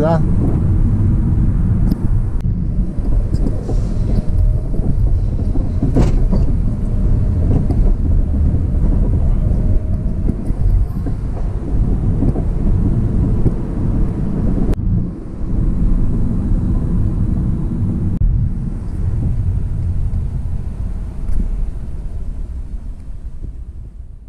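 Car driving along a city street, heard from inside the cabin: a steady low rumble of engine and road noise. A single sharp click comes about six seconds in, and the sound fades out at the end.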